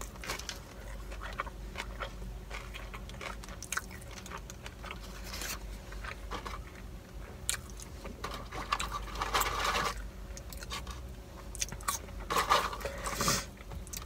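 Close-up chewing of a bite of a McDonald's burger with lettuce: a run of small crisp crunches and wet mouth clicks. It swells into two louder noisy stretches, one about two-thirds of the way through and one near the end.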